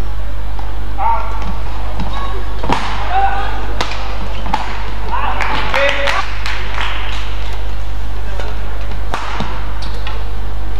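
Sharp knocks of badminton rackets striking a shuttlecock, a few seconds apart, over arena noise with voices and a steady low hum.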